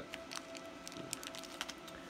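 Light scattered clicks and rustles from handling a Raspberry Pi circuit board and a small plastic bag of metal standoffs and screws, over a faint steady hum.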